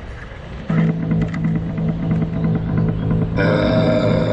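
Hip-hop backing track starting up: a held low bass note with a steady beat comes in under a second in, and fuller instrumentation joins near the end.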